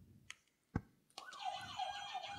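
Quiz buzzer going off with a siren-like warbling tone that rises and falls several times a second, starting just past a second in, after a single click.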